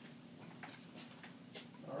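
Quiet room tone with a few faint, short clicks spread through the middle of the pause.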